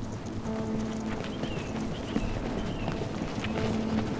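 Running footsteps of football boots striking paving stones in a quick, even rhythm, over soft background music with long held notes.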